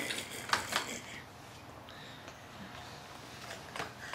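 A few light clicks and knocks from plastic toys being handled, over quiet room tone.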